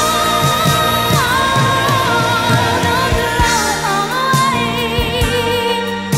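Early-1980s R&B/soul recording: sung vocal lines with long held notes that step in pitch and waver with vibrato, over a full band with a steady drum beat.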